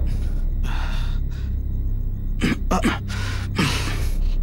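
A person gasping and breathing hard in short noisy breaths, with a few brief voiced sounds falling in pitch in the second half, over a steady low hum.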